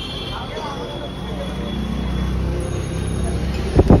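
Low vehicle engine rumble building up amid street noise and faint voices, with a sharp thump just before the end.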